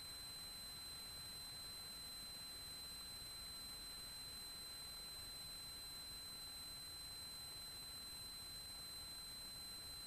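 Faint steady electrical hiss from an aircraft headset/intercom audio feed, with a thin constant high-pitched tone running through it; no engine or voices come through.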